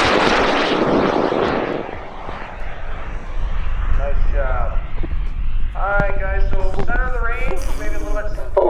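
Solid-fuel high-power rocket motor (a Clifton K300) burning as the rocket climbs away. Its loud exhaust noise fades over the first two seconds. From about four seconds in, people's voices are heard.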